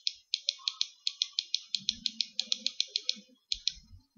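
A quick run of about twenty computer clicks, roughly six a second, with a short pause near the end, as a chess program is stepped back move by move to an earlier position.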